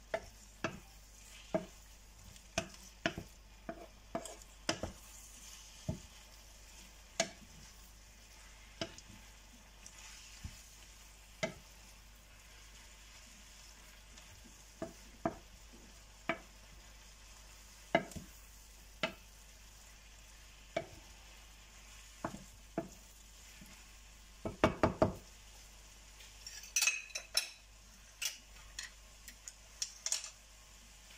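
Wooden spatula knocking and scraping against a nonstick frying pan as udon noodles with prawns and vegetables are stir-fried, in irregular taps over a faint sizzle. The spatula knocks in a quick run near the end, followed by a few sharp, higher clinks.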